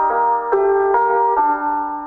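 Sampled Addictive Keys piano playing a simple melody with a counter melody layered on top, held notes changing about every half second.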